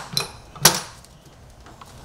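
One sharp click a little over half a second in, with a few fainter ticks, as hands work at an engine's throttle body and intake tube to disconnect them for removing the intake manifold.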